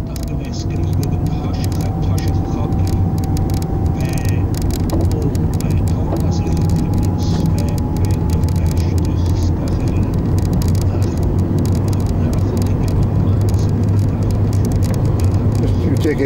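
Car engine and tyre noise heard from inside the cabin while driving, a steady low drone. A faint whine slowly rises in pitch over the first half.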